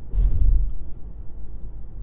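Road noise from inside a moving car's cabin, a steady low rumble, with a brief low thump in roughly the first half-second.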